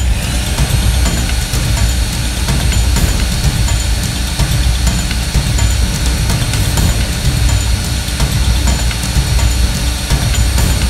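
Cordless drill running steadily under load as a small bit bores a hole through a metal wing nut clamped in vice grips: a constant motor whine over a grinding hiss, without a break.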